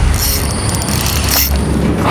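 Fishing reel's drag giving line in a rapid ratcheting run as a hooked fish pulls against the bent rod.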